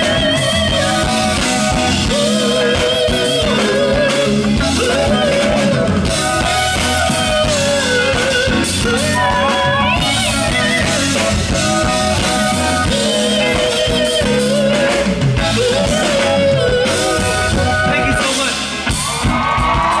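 Live soul band of drums, bass guitar and keyboards playing, with a male lead vocal singing long, wavering notes over it. The music dips briefly in level near the end.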